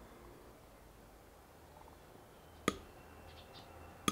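Quiet handling of a taped stack of aluminium bars as its masking tape is slit with a utility knife, with one sharp click a little past halfway.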